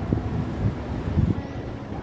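Wind buffeting the phone's microphone: a low, uneven noise that swells briefly about a second in.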